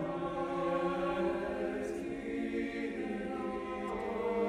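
A choir singing slow, held chords, moving to a new chord near the end.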